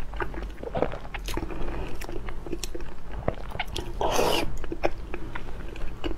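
A person chewing a full mouthful of noodles and boiled egg close to the microphone, with steady wet smacks and clicks of the mouth. One brief, louder breathy burst comes about four seconds in.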